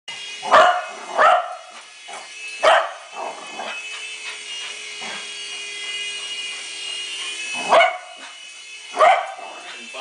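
West Highland White Terrier barking sharply five times, three in quick succession and then two more near the end, over the steady high whine of the WL Toys V388 Hornet toy remote-control helicopter's electric motor and rotors.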